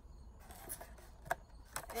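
Tea packaging handled during an unboxing: a few short crinkles and taps, the sharpest about one and a quarter seconds in and a quick cluster near the end.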